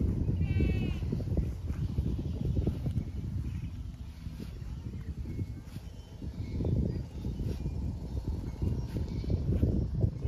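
Uneven low rumble of wind buffeting the microphone, with a short wavering bleat of a farm animal about half a second in.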